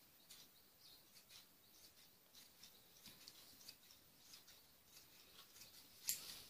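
Faint, irregular snipping of large scissors cutting through net fabric.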